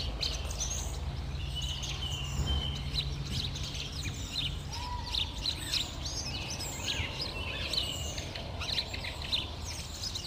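Several small birds chirping and calling in quick, overlapping high notes, over a low steady rumble that fades out about four seconds in.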